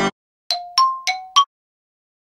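An iPhone ringtone: four short chiming notes in quick succession, about a third of a second apart.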